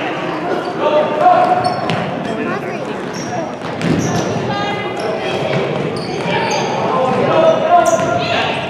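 Basketball being dribbled on a hardwood gym floor, with sneakers squeaking and kids and spectators calling out, all echoing in the large gym.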